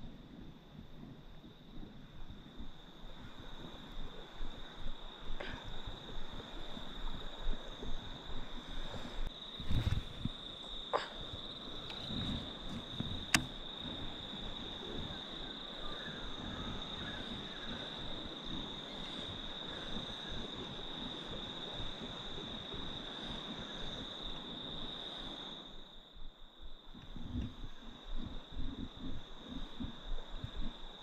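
Steady, shrill insect chorus: one continuous high note that breaks off briefly near the end. Beneath it, low handling rumble and a couple of sharp clicks.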